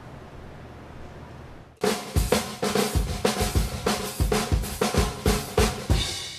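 A faint steady hiss, then about two seconds in a closing music jingle with a punchy drum beat of kick and snare starts abruptly and plays on, about three to four hits a second.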